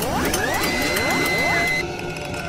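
Animated logo-intro sound effects: a run of rising sweeps with clicks, then a held high tone that cuts off shortly before the end.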